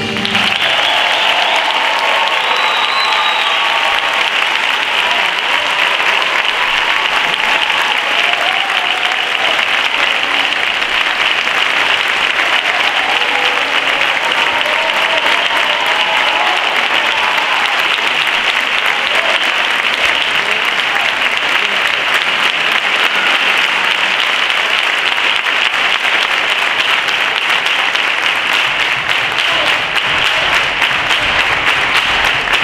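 Theatre audience applauding steadily and loudly after the concert band's encore, a dense, continuous clapping that does not let up.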